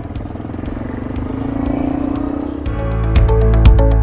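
Honda Dominator NX650's single-cylinder engine pulling away and accelerating, its pitch rising steadily. About two and a half seconds in, loud background music with a steady beat starts and takes over.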